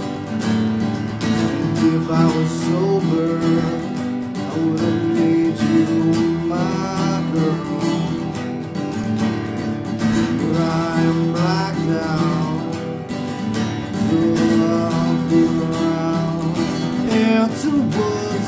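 Acoustic guitar strummed steadily, with a man's voice singing in places.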